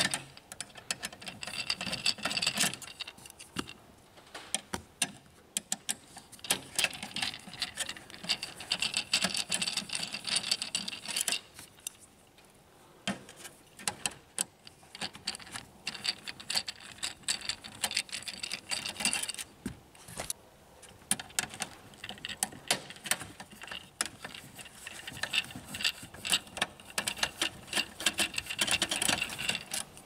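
Screwdriver backing out small screws from a laser printer's main board and sheet-metal frame. Fast clicking and scraping comes in four spells with short pauses between them, with a few handling knocks.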